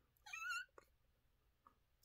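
A person's short, high-pitched vocal squeaks with a wavering pitch, imitating a smoke alarm's low-battery chirp: one near the start and another just as it ends, with quiet between.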